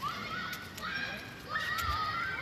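Children shouting and squealing at play: three drawn-out, high-pitched calls that rise and hold, with a few sharp clicks among them.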